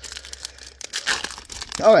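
Foil wrapper of a Topps Composite football card pack crinkling and tearing as it is ripped open by hand, a quick run of sharp crackles.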